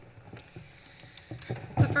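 Faint rustling and a few light taps of paper sheets being handled at a lectern, picked up by the lectern microphone, before a woman's voice starts near the end.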